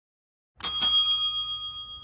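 A bell struck twice in quick succession about half a second in, then ringing on and slowly fading.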